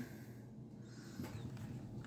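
Quiet room with faint handling noise, a little louder in the second half: a Hot Wheels blister card being moved about in the hand.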